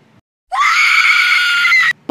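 A woman's loud, high-pitched scream, lasting about a second and a half: it starts about half a second in, rises sharply and is held, then cuts off just before the end. It is the cry of waking to the burning heat of a strong ointment rubbed on her forehead.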